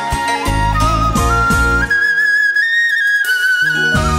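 Instrumental passage of a Vietnamese bolero ballad: a flute plays a slow melody that steps upward to a long held high note. The bass and backing fall away about two seconds in, leaving the flute nearly alone, and come back in just before the end.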